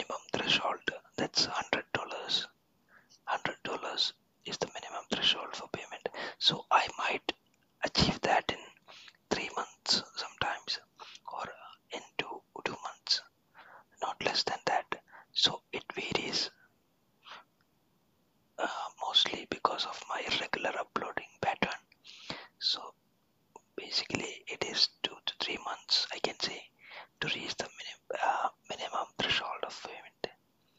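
Close whispered speech, broken by a pause of about two seconds a little past the middle.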